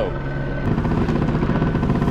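Helicopter flying overhead, its rotor beating steadily. The beat grows louder about two-thirds of a second in.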